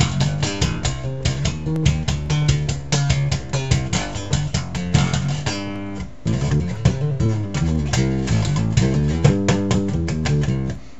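1987 B.C. Rich Ironbird electric bass, with a precision-style pickup, played fingerstyle through a guitar amplifier: a fast stream of plucked notes with a brief break about six seconds in.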